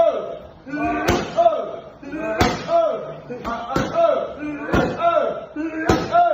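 Kickboxing strikes landing on a trainer's pads in a steady rhythm, one sharp smack roughly every second, six in all. Each smack is followed by a short vocal shout that falls in pitch.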